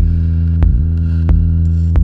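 Electronic music played live on hardware synthesizers and drum machines: a loud, sustained low bass drone with a sharp drum hit about every two-thirds of a second. The bass dips briefly in pitch near the middle.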